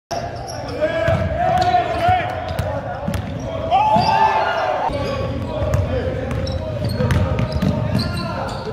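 Basketball bouncing on a hardwood gym court with repeated sharp bounces, under voices calling out during play.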